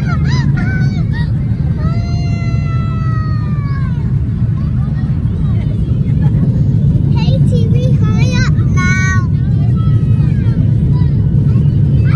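Airliner cabin noise in the climb just after take-off: a steady, loud, low roar of the jet engines and airflow. Voices call out over it a few times, one with a long falling pitch.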